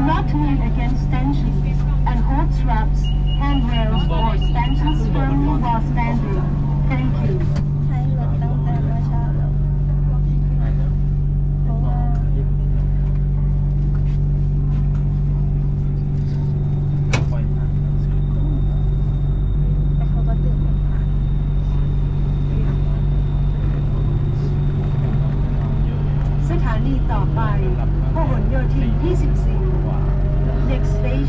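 Inside a BTS Skytrain car standing at a station: a steady low hum from the car's equipment, with a short run of fast beeps about three seconds in. Near the end a rising whine as the electric train pulls away and its traction motors speed up.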